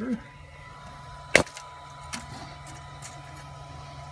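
Steel tape measure being handled against a build plate: one sharp click about a second and a half in, then a couple of faint taps, over a steady low hum.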